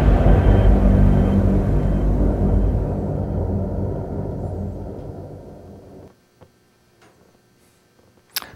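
Closing low rumbling drone of a film trailer's dramatic score, holding steady low tones and fading out over about six seconds into near silence, with a few faint clicks near the end.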